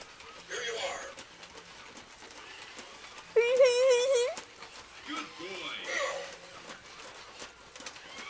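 Toy robot's electronic voice: a warbling, wavering synthetic call about three and a half seconds in, lasting about a second, with fainter voice-like sounds before and after it.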